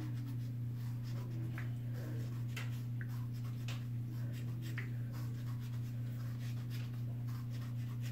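Fingers rubbing and scratching through pulled-back natural hair in short, faint strokes, over a steady low hum.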